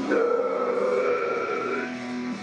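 A long harsh growled scream held for nearly two seconds, steady in pitch, over a faint heavy-guitar backing track.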